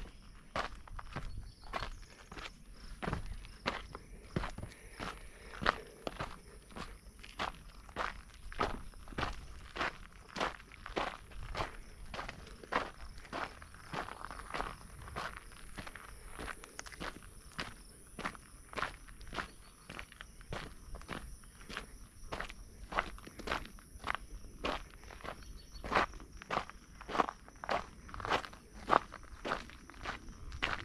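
A hiker's footsteps on a dry dirt and rock trail, at a steady walking pace of about two steps a second.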